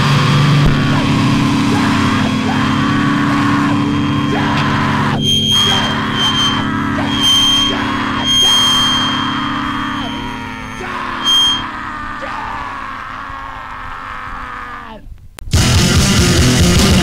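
Hardcore punk recording: the end of a song, with distorted electric guitar ringing out in a wash of noise, high feedback squeals and falling pitch slides, fading away. After a brief gap about a second before the end, the next song starts at full volume.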